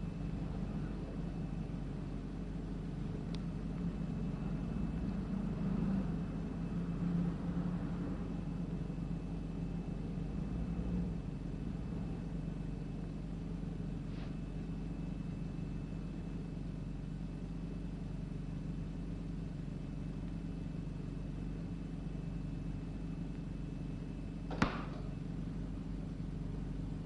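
Steady low hum with one sharp click near the end. The click is typical of the ruby laser ophthalmoscope firing its flash, which the patient says sounds like a box shutting.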